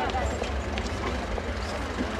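Vehicle engine running with a steady low rumble, with indistinct voices and a few short clicks over it.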